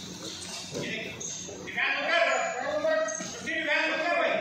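People's voices talking and calling out, with no words made out; they grow louder about halfway through.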